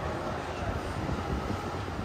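Steady city street ambience: a continuous low rumble of road traffic.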